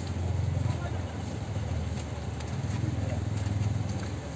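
A low, steady engine rumble, swelling slightly about half a second in and again near the end, with faint voices in the background.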